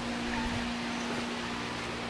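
A steady machine hum on one constant low note, over a faint even background noise.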